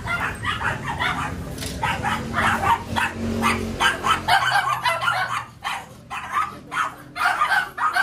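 Dogs barking and yipping in a rapid run of short, sharp barks. A low steady hum underneath stops about four seconds in.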